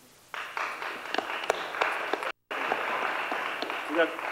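Audience applauding: the clapping starts suddenly just after the start and carries on steadily, with a moment of complete silence a little past halfway where the recording drops out.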